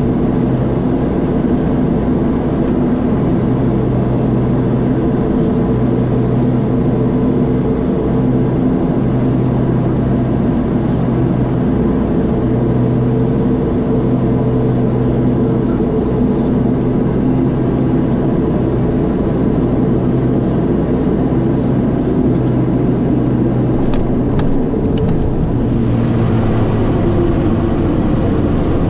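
Steady cockpit drone of a Beechcraft King Air's twin turboprop engines and propellers, a low hum with a few held tones over engine and airflow noise, at approach power through final approach and touchdown.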